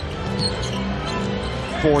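Basketball arena game sound: steady crowd noise with arena music playing under it and a ball being dribbled on the hardwood court.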